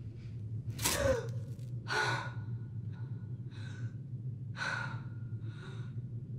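A young woman gasps sharply about a second in, then breathes hard in a run of short, ragged breaths about one a second, over a steady low hum.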